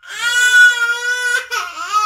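Baby crying: one long, loud cry held at a steady pitch for about a second and a half, then a brief catch and a second cry that rises in pitch.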